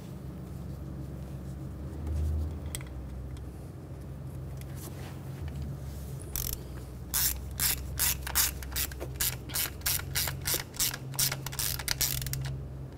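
Small ratchet with a T20 socket clicking in quick strokes as it drives a harness screw down, starting about halfway through; before that only a faint low hum.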